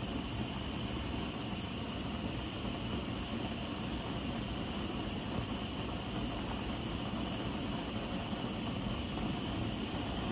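A Bernzomatic handheld gas torch burning with a constant, even hiss of flame. It is heating a folded copper coin-ring blank to cherry red to anneal and soften it for folding.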